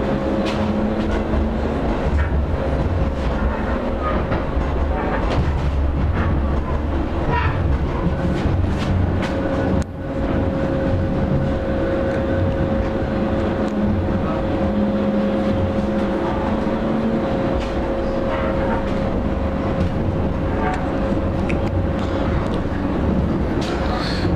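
Pesa Fokstrot tram heard from inside the passenger saloon while riding: a steady low rumble of wheels on rails with a steady high whine over it and a few light knocks.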